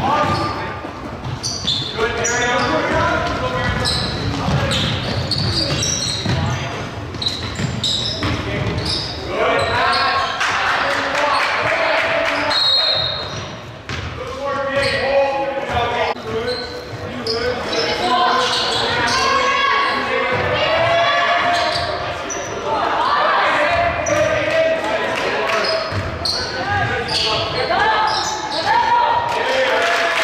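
Basketball game in a gym with a hardwood floor: a ball bouncing, with indistinct voices of players and spectators, all echoing in the large hall.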